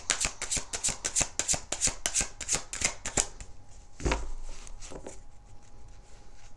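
Tarot deck shuffled overhand, a quick run of soft card slaps about six a second that stops a little past three seconds in. A single soft thump follows about a second later.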